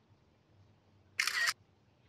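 A single camera shutter click, short and sharp, a little over a second in, against near silence.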